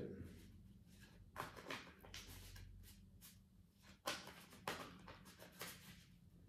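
Tarot cards being shuffled by hand: a series of faint, short flicks and slides of the cards, irregular, about one every half-second to second.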